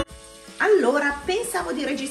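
A woman talking, starting about half a second in.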